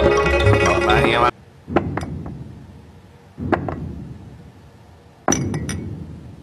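Background music that cuts off about a second in, followed by sharp clinking knocks, each ringing out and fading: two, then one, then three in quick succession.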